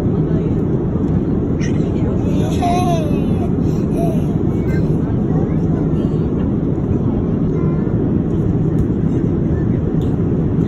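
Steady airliner cabin noise: the constant low rumble of jet engines and airflow through the fuselage. A small child's brief voice rises and falls over it about two and a half to four seconds in.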